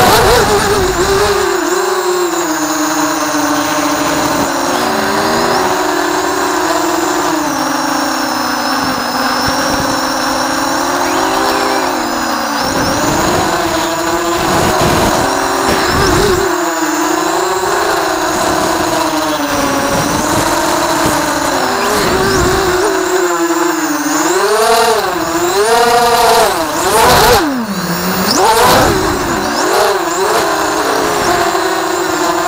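Racing quadcopter's four Cobra 2204 1960kv brushless motors spinning 6x4.5 Thug props on 3S, driven by DAL RC 12A ESCs being stress-tested on the larger props. It is a steady droning whine whose pitch rises and falls with the throttle, swinging more sharply and quickly in the last several seconds during aggressive manoeuvres.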